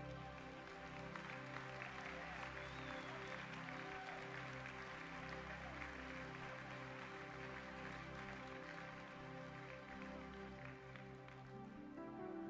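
Soft worship music of steady sustained chords, with a congregation applauding over it; the clapping builds about a second in and thins out near the end.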